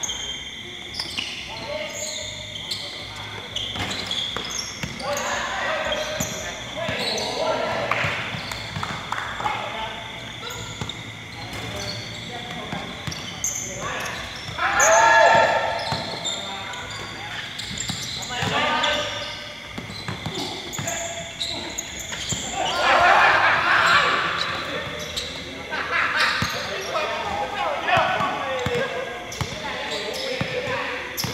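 A basketball bouncing and being dribbled on a hard court, with players shouting to each other several times over it.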